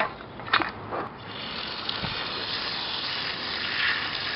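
Water spraying under pressure from an opened irrigation riser tap, a steady hiss that starts about a second in, after a few sharp clicks. The new line is pressurized and holding.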